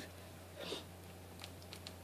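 Faint handling noises from a small perfume spray bottle and its packaging: a soft rustle about two-thirds of a second in, then a few light clicks near the end, over a low steady room hum.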